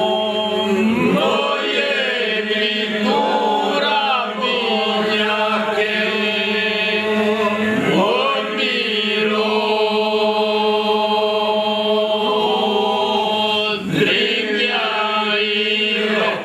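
A group of men singing Albanian iso-polyphonic folk song unaccompanied. A drone (iso) is held steady underneath while the leading voices rise and fall above it. The voices break off briefly near the end and pick up again.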